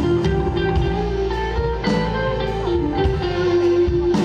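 Live band playing an instrumental passage of a pop ballad: a guitar carries a sustained melody over bass and drums.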